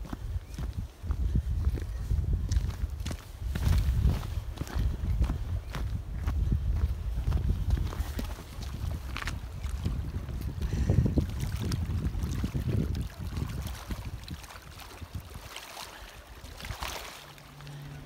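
Wind rumble on a handheld camera's microphone with irregular footsteps and handling knocks, quieter in the last few seconds.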